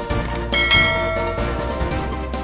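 Background music with a bright bell-like ding sound effect about half a second in that rings for about a second: the notification-bell chime of a subscribe animation.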